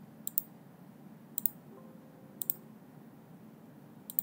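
Computer mouse button clicked three times, about a second apart, each a quick double snap of press and release, over a faint low steady hum.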